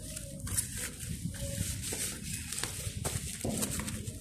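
Plastic bubble mailer rustling and crinkling as a boxed phone screen is pushed into it and the envelope is handled and pressed, with small clicks and knocks of handling along the way.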